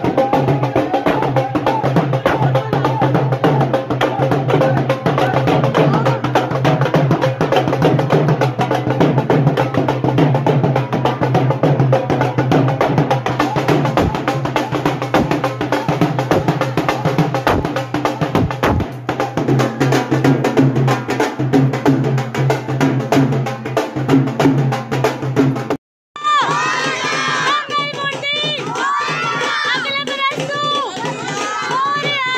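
Fast, dense drumming in the style of procession dhols, with music over it. About 26 s in the sound cuts out briefly, then a group of voices shouts and cheers.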